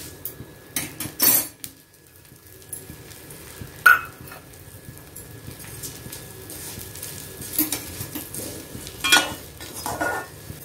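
A metal ladle stirring red flattened rice (aval) as it roasts in a little ghee in a kadai: a low scraping with a few sharp clinks of metal on the pan. The loudest clink, about four seconds in, rings briefly, and another comes near the end.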